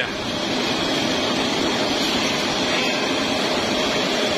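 Steady machinery noise of a running poultry processing line: the overhead shackle conveyor and processing machines giving an even, unbroken whir and hiss.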